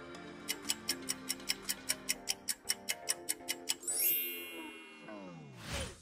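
Quiz countdown timer sound effect: rapid, even clock-like ticking over background music, then a bright chime about four seconds in followed by a falling tone, and a short whoosh just before the end.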